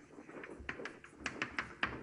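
Writing on a board: a run of light, quick taps starting about half a second in.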